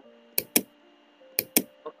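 Two quick double clicks of a computer mouse, about a second apart.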